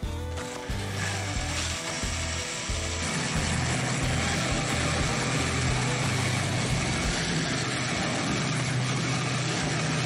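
Background music at first, then a cordless drill spinning a 3-inch (84 mm) hole saw into a thick plastic tub: a steady motor hum with a grinding cutting noise that settles in about three seconds in and holds level.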